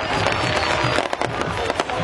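Fireworks going off in rapid succession: a dense run of crackling bangs, with a thin high whistle through the first second.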